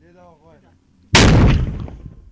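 A mortar firing once: a single loud blast about a second in that dies away over most of a second.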